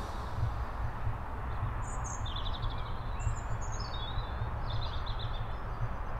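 Outdoor ambience: a steady low rumble with a few short bird chirps and trills between about two and five seconds in.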